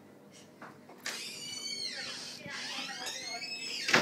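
A person's high-pitched shriek or squeal, wavering in pitch with falling and rising glides, starting about a second in and lasting about three seconds. It is cut off by a sudden sharp, loud sound just before the end.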